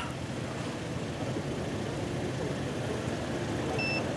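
Steady low rumble of idling car engines and traffic. Just before the end comes a short, high electronic beep from a breathalyser that has just taken a driver's breath sample.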